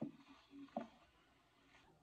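Near silence: room tone, with a soft click at the start and a couple of faint, short hums of a woman's voice in the first second.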